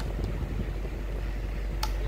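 Steady airy running noise of a small battery-powered emergency desk fan, with a low hum under it. A single click of the push-button switch on its base comes near the end as the lamp is switched off.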